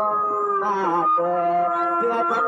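A man singing a Shan song into a handheld microphone, holding a long note that slides down about a second in and settles on a lower held note.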